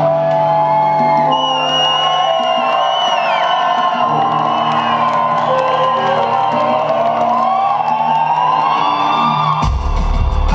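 Live band music loud through a club PA, in a breakdown without the deep bass: held tones and a pitch that rises steadily over the last few seconds, building to a drop where the heavy bass comes back in just before the end. Crowd whoops over it.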